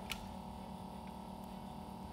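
Steady low hum of several held tones from the running mini liquid nitrogen freezer, which is cooling its plate down, with one faint click just after the start.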